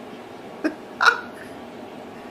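A woman's short breathy laughs: two brief bursts, the second louder, about half a second apart.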